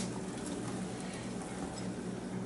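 Quiet room tone with a low, steady hum, and faint soft rustling as chopped onions are tipped from a glass bowl onto frozen ground beef in a slow cooker.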